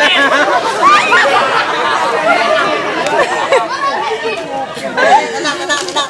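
Crowd chatter: many voices of adults and children talking over one another at once.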